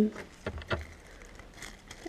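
Clear plastic zip-lock bag crinkling as it is handled, with a few short, light clicks.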